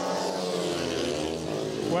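Speedway bikes' single-cylinder engines racing, several engine notes overlapping and shifting in pitch as the riders go round the track.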